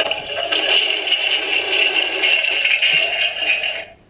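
A battery-powered toy potty from a baby-doll set, triggered by its 'Try Me' button, plays a tinny electronic tune through its small speaker. It runs for almost four seconds and cuts off at the end.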